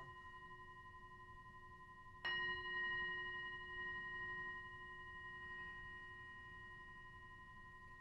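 Hand-held metal singing bowl ringing, struck with a wooden mallet about two seconds in, its hum and several higher overtones then slowly fading.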